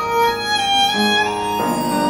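Violin playing a melody of held notes over piano accompaniment, an instrumental passage with no singing.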